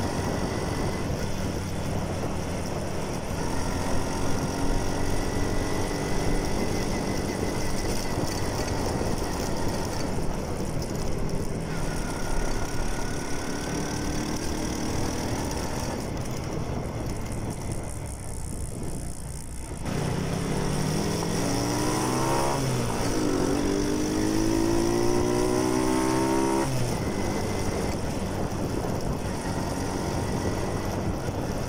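Rusi Mojo 110 mini bike's small engine running on the road, its pitch rising and falling with the throttle over a steady rush of wind noise. In the second half the engine pitch climbs several times in a row as the bike accelerates.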